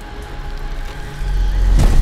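Trailer sound design: a deep rumbling swell that grows steadily louder under a faint held tone, ending in a heavy hit just before the narration resumes.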